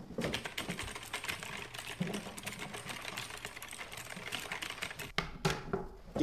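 Pencils writing on exam paper on wooden desks: a quick, irregular run of small scratches and ticks, with a slightly louder scrape about five and a half seconds in.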